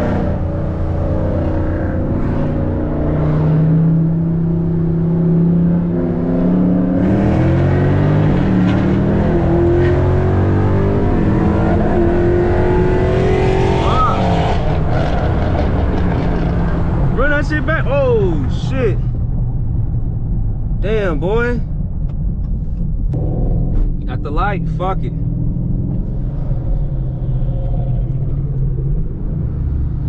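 V8 muscle car engine accelerating hard, its pitch climbing in steps through the gears for about fourteen seconds, then easing off to a low steady cruise. Voices come in over the engine in the second half.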